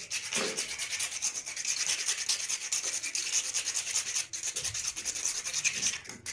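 A bare hacksaw blade, held in the hand, rasping back and forth against the inside of a white plastic pipe fitting in rapid, continuous strokes, briefly pausing a little after four seconds.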